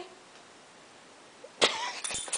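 Near-quiet room, then a single short cough about one and a half seconds in.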